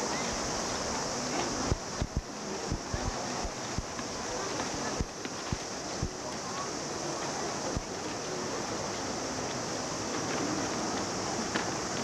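Steady outdoor poolside ambience through a camcorder microphone: a constant hiss with faint distant voices, and several low bumps on the microphone in the first eight seconds.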